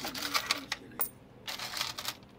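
Change being counted out of a cash register drawer: a quick series of small clicks and clinks from coins and the drawer, with paper bills rustling.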